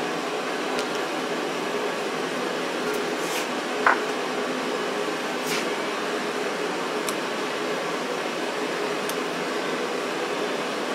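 Steady background hum with a few faint, short clicks spread through it; the sharpest comes about four seconds in. The clicks fit a screwdriver turning the governor spring adjusting nut of a Bosch P injection pump notch by notch.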